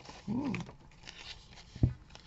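Paper and card rustling as a handmade card is slid out of a paper envelope, with a brief hummed vocal sound about half a second in and a single dull thump near the end.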